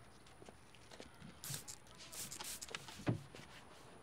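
Faint handling sounds of cleaning a car: a few short hissing rustles in the middle and light scattered taps, with one soft thud about three seconds in.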